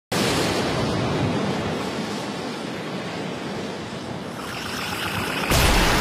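Intro sound effect: a steady rushing noise like wind or surf that starts suddenly, eases a little, then builds and ends in a sudden louder hit about five and a half seconds in.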